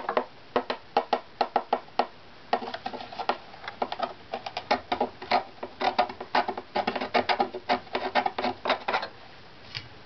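Quick runs of light taps on a violin's carved maple back plate, each giving a short pitched tap tone, moved from spot to spot across the plate with brief pauses. It is tap-tone tuning: listening for spots where the plate's response is off and wood needs scraping down.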